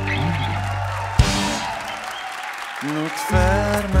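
A live rock band's final chord rings out and fades, then a sharp hit about a second in gives way to audience applause. Near the end a new piece of music starts.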